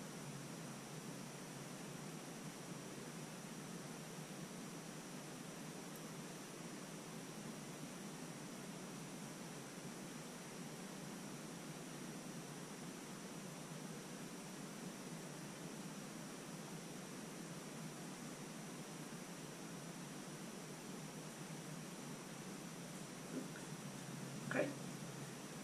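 Steady low background hiss of room tone, with a faint high-pitched whine and no distinct events.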